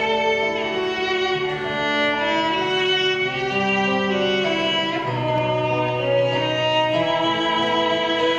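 Violins playing a melody in long, held bowed notes over lower sustained notes.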